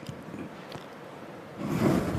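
Quiet room tone with a few faint ticks, then a louder rustling noise starting about one and a half seconds in.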